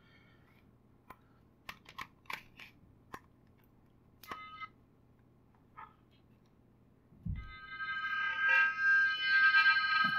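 Scattered plastic clicks and taps as a Savi's Workshop lightsaber hilt is fitted together, with a brief electronic beep about four seconds in. A low thump comes near seven seconds, then a steady electronic tone made of several pitches sounds to the end, louder than the handling.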